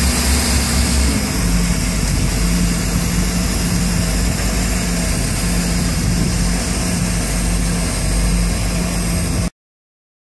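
1987 Volvo Penta AQ211A four-cylinder marine engine idling steadily at minimum rpm, warmed up with its electric choke fully open. Its note steps down slightly about a second in. The sound cuts off suddenly near the end.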